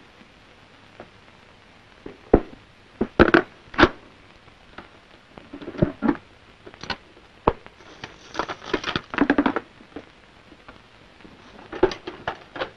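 Hurried handling noises at an open safe: scattered knocks and clicks, then a denser spell of rustling about two-thirds of the way in.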